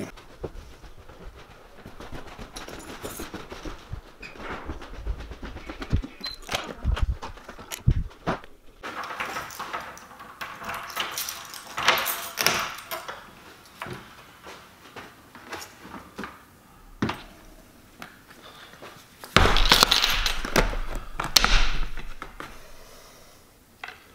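Scattered knocks, clicks and rustles of someone moving about a room and handling things: a door, and keys being set down. A louder stretch of knocking and rustling comes near the end.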